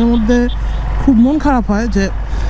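Mostly a man's voice talking, over a steady low rumble of wind and the Suzuki Gixxer SF motorcycle at riding speed.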